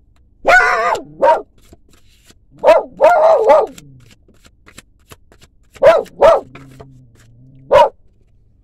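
A dog barking loudly, about seven barks in three bursts.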